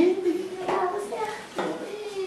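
Speech only: a voice calling "vente" (come here), drawn out over about the first second, followed by a few short vocal sounds.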